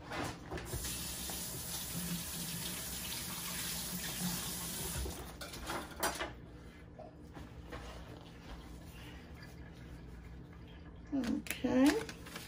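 Kitchen tap running steadily for about five seconds, then shut off, followed by quieter handling sounds.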